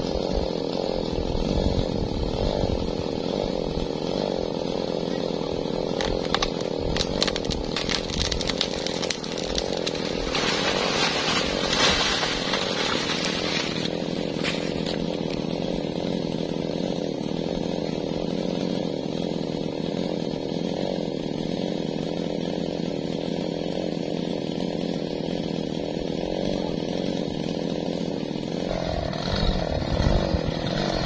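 Two-stroke chainsaw running steadily, with a run of sharp crackles about six seconds in followed by a louder rushing noise lasting a few seconds.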